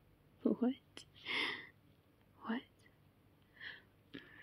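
A woman's soft, wordless vocal sounds: a few short murmurs and breathy exhales with pauses between them.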